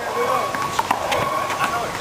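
Several sharp smacks of a small rubber handball being hit by hand and striking the wall during a rally, a few tenths of a second apart.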